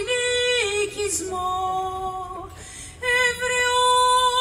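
A woman singing solo and unaccompanied in long held notes that slide from pitch to pitch, with a short breath pause about two and a half seconds in before the next phrase.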